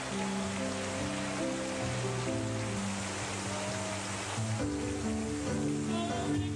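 Slow, held keyboard chords from a live gospel band, changing chord about four and a half seconds in, over a steady wash of crowd noise from an audience clapping and praising.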